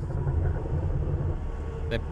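Ferrari's engine idling, a low steady hum heard inside the cabin while the gear lever is worked through the open metal shift gate.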